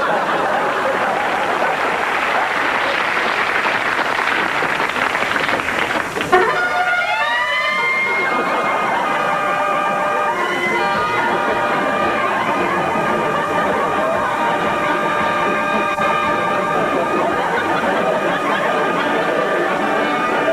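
Pub fruit machine (slot machine) sounding off: after a dense noisy wash, a sharp click about six seconds in sets off rising electronic sweeps, then a run of steady beeping tones at several pitches, like a siren.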